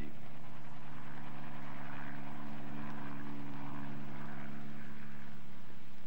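Helicopter engine and rotor running steadily, heard from inside the cabin: an even drone with several low tones held at a constant pitch.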